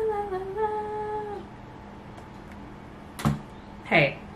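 A woman humming one long note that dips in pitch and stops about a second and a half in; two short vocal sounds follow near the end.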